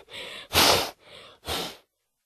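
A bull snorting: four breathy puffs, the louder ones about a second apart with fainter ones between.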